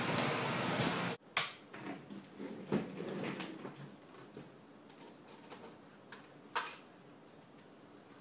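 Subway-station noise that cuts off abruptly about a second in. It gives way to quiet room tone with a few scattered knocks and thumps; the strongest come just after the cut and about two-thirds of the way through.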